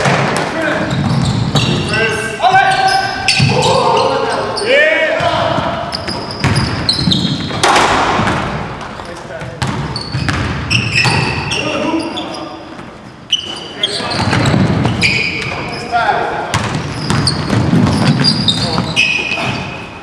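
Basketball game on a hardwood gym floor: the ball bouncing and dribbling, short high squeaks of sneakers, and players' voices calling out, all echoing in the large hall.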